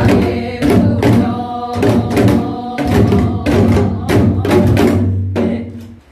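Janggu (Korean hourglass drum) played in the lively jajinmori rhythm, in its variant pattern, with a woman singing a Gyeonggi folk song over it. The playing and singing stop just before the end.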